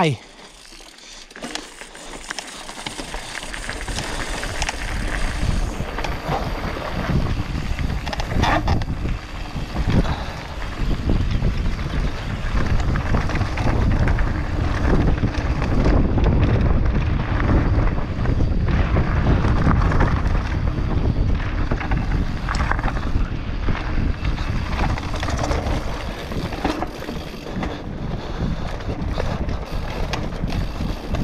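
Mountain bike ridden fast down a dirt trail: wind buffeting the camera's microphone and tyres rolling over the dirt, with scattered knocks and rattles from the bike over rough ground. The noise builds about three seconds in as the bike picks up speed, then stays loud.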